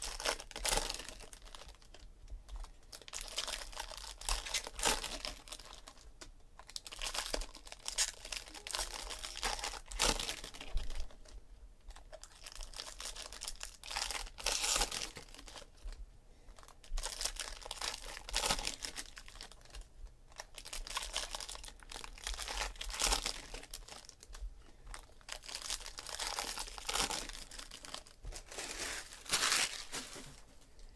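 Trading-card pack wrappers being torn open and crinkled by hand, in bouts of rustling every few seconds, one pack after another.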